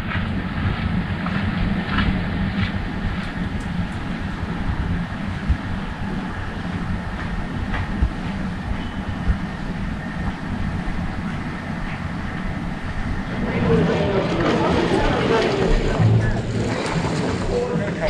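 Steady outdoor rumble with wind noise on the microphone. About three-quarters of the way through, people's voices join in.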